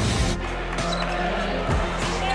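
A basketball bouncing on a hardwood court, one bounce at the start and another near the end, over arena crowd noise and music.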